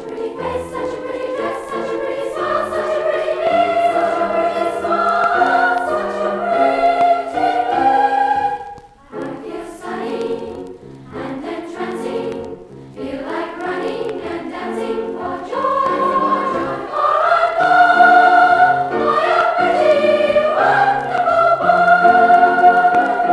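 A school glee club choir singing in held, flowing phrases, played back from a vintage vinyl LP, with a brief break between phrases about nine seconds in.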